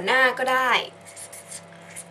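A woman's voice says a short phrase, then a few short, faint strokes of a pen writing.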